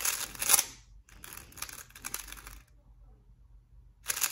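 Plastic 3x3 speed cube clacking as its layers are turned in a fast burst of moves, followed about a second in by a second, quieter run of turns.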